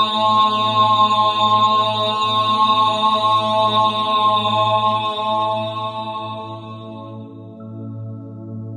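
Meditative devotional drone music: a held, many-toned chord over a steady low drone, slowly fading over the last couple of seconds.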